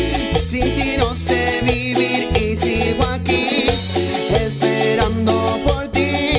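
A live band playing upbeat Latin dance music on electric guitar, bass guitar, keyboards and drums, with metal shakers keeping a steady beat.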